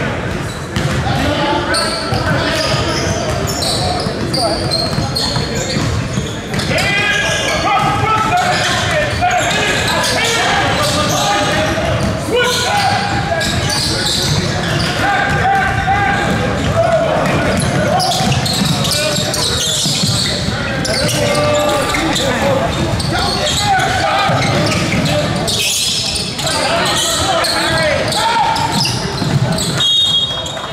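Basketball game sounds in a large gym: the ball bouncing on the court amid many overlapping voices of players and spectators calling out.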